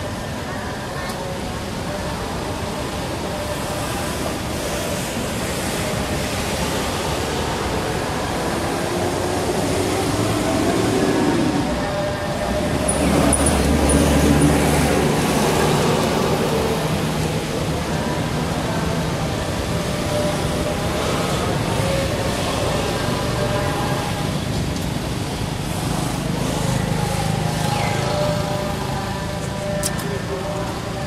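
Outdoor background noise with traffic and faint distant voices; a motor vehicle passes, louder and lower about twelve to fifteen seconds in.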